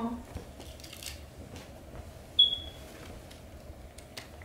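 Clothing being handled and rustled as garments come out of a cardboard box, with one short, sharp high-pitched sound a little past halfway.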